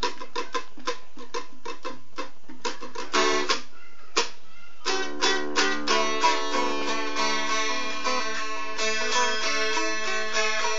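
Carved wooden boat lute being plucked in quick, separate notes, pausing briefly about four seconds in, then going on more fully with notes ringing over a held drone.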